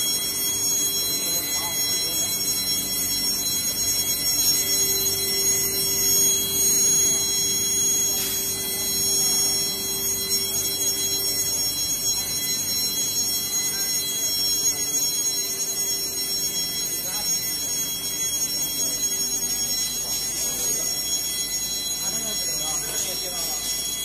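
Multi-station vacuum thermoforming machine running: a steady mechanical drone with several fixed high-pitched whining tones over it, and a stronger low hum from about four to eleven and a half seconds in.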